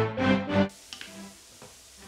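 Background music for the first moment, which then stops, leaving a faint steady hiss of grated carrots frying in olive oil in a pan, with a couple of small clicks.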